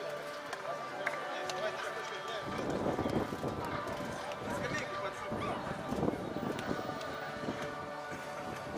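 Men's voices talking and calling out on the pitch, with music playing in the background. The voices get louder and busier about two and a half seconds in.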